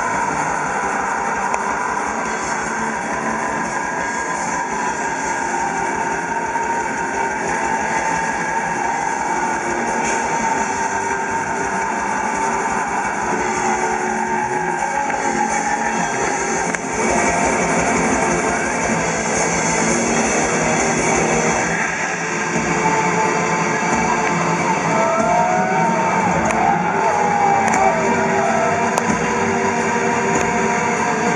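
Black metal band playing live: distorted electric guitars over very fast drumming. About two-thirds of the way through, the rapid drum beat breaks into a sparser pattern.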